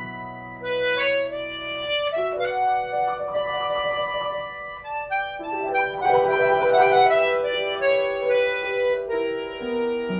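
Button accordion playing a traditional Québécois tune in held, reedy notes, with a grand piano accompanying.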